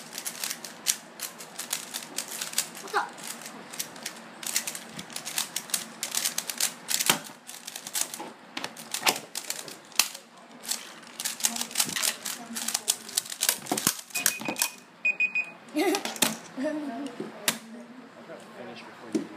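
Rapid plastic clicking of 3x3 Rubik's cubes being turned by hand at speed, in quick irregular flurries. A short high electronic beep sounds about fourteen seconds in.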